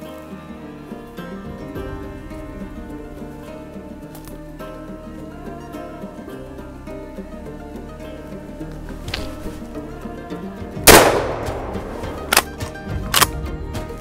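A single shotgun shot about eleven seconds in, loud and ringing out briefly, then two short sharp clacks under a second apart. Background music plays throughout.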